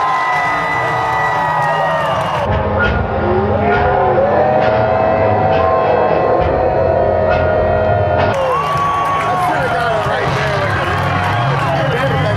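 Mega truck engine revving in long rising and falling pulls, over crowd noise and an indistinct voice. The sound changes abruptly about two and a half seconds in and again after about eight seconds.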